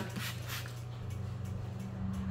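Quiet room tone: a steady low hum, with a few brief faint hissy noises in the first half second.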